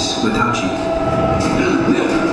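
Animated film soundtrack played loud over a showroom sound system: a voice over a steady low rumble, with held tones underneath.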